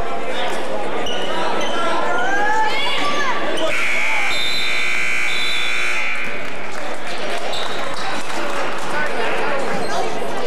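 Gym scoreboard horn sounding steadily for about two seconds, a little over a third of the way in, signalling a stop in play. Crowd voices and shouting run throughout, with a basketball bouncing on the hardwood floor.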